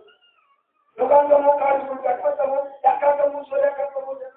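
A voice singing in long held notes, starting about a second in after a moment of near silence.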